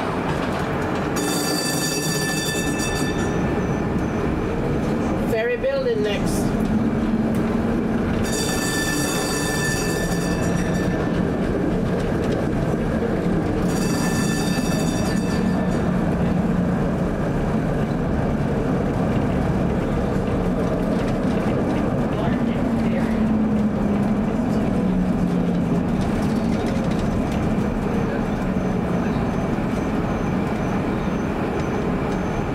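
Ex-Philadelphia 1947 PCC streetcar running along street track, heard from inside the car, with a steady running noise and a motor whine that rises and falls in pitch. Three high-pitched ringing squeals of about two seconds each come about a second in, about eight seconds in and about fourteen seconds in.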